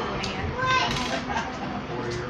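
Indistinct chatter of several people's voices in a room, with a brief higher-pitched voice about a second in.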